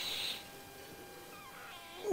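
Mostly quiet room: a brief soft breath at the start, then a faint, short high-pitched call in the second half.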